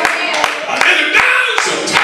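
Church congregation clapping in a steady rhythm, about two and a half claps a second, with voices calling out over the clapping.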